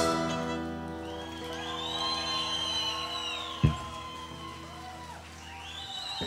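A live band's final chord ringing out and fading away after the song's loud ending, sustained notes decaying through a large hall. One sharp knock about three and a half seconds in.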